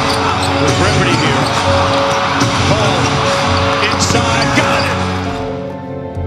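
Arena crowd noise with a basketball being dribbled on the court, over steady background music. The crowd noise fades out near the end, leaving the music.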